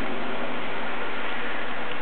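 A steady, even hiss that does not change in level.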